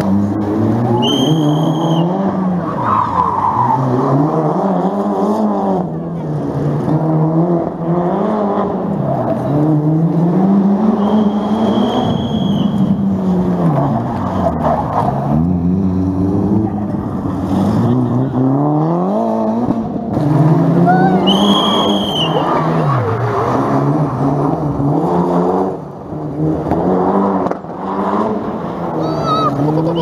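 Rally cars racing on a sprint stage, their engines revving hard and rising and falling in pitch again and again as they accelerate and change gear. There are several short, high tyre squeals as the cars slide through corners.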